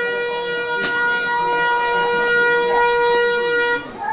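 One long, steady horn blast at a single unchanging pitch, cutting off near the end, with faint voices underneath.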